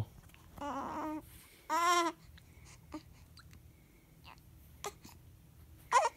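A newborn baby making two short fussing cries, each about half a second long, about a second apart; the second is louder.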